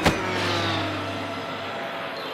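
Cartoon sound effect: a sharp hit, then a whooshing zip whose pitch falls as the animated characters dash off, fading away over about two seconds.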